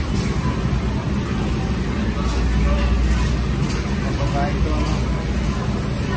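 Shopping cart wheels rolling over a concrete warehouse floor, a steady low rumble, under the hubbub of a busy store with faint, indistinct voices.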